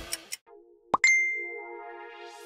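Quiz sound effect: after the background music cuts off, a quick rising swoosh leads into a single bright bell-like ding about a second in, which rings out and slowly fades over a faint wavering low tone. It marks the end of the countdown and the reveal of the answer.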